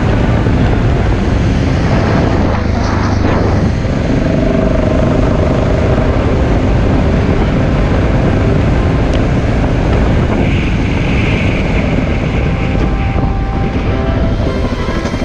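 Vehicle travelling along a gravel road: loud, steady wind noise on the camera's microphone over the running engine and tyres.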